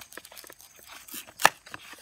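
Knife blade cutting through the green crown of a banana hand to sever it from the bunch: a run of small clicks, with one sharp, loud click about one and a half seconds in.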